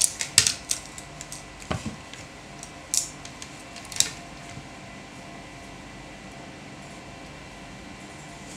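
Multimeter probes being set down on a laptop motherboard's MOSFET pins to check for a short: several sharp light clicks and taps in the first four seconds, then only a faint steady hum.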